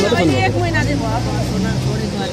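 A woman talking, with a motor vehicle's engine running in the background as a steady low hum.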